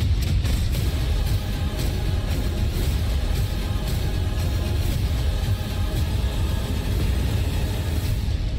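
Loud action-film trailer soundtrack: dense music over a heavy deep bass rumble, cutting in suddenly at the start and holding steady and loud throughout.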